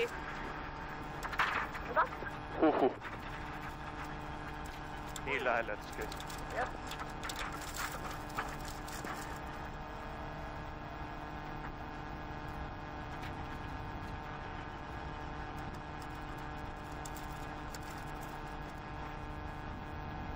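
Rally car engine running steadily at low, even revs, heard as a muffled hum inside the cabin.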